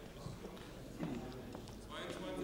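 Faint footsteps on a hard floor, a few soft knocks, with quiet murmuring voices in the council chamber, as a councillor walks up to the microphone to speak.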